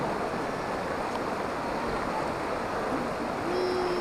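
Shallow river water rushing steadily over a low rock ledge, with a faint brief held tone near the end.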